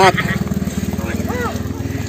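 A small motorcycle's engine running steadily as it goes by, with a fast, even low pulse.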